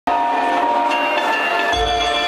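Live electronic music over a venue sound system: a loud, held synth chord, joined by a deep bass hit near the end.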